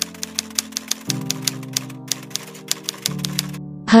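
Typewriter-style typing sound effect, a rapid run of key clacks about five a second that stops shortly before the end, over background music of sustained keyboard chords that change every second or two.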